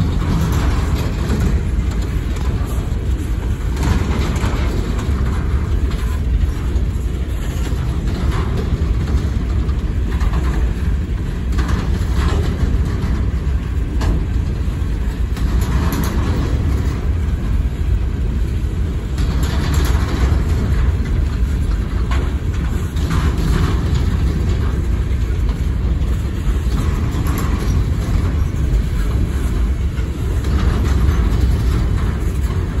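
Empty coal hopper cars of a freight train rolling past close by: a steady loud rumble of steel wheels on rail, with scattered clanks and rattles.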